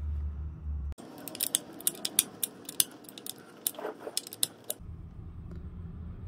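Irregular metallic clicks and clinks of a hand tool working a motorcycle's rear-axle chain-adjuster bolt, a few a second, from about a second in until near the end, with a low room hum before and after.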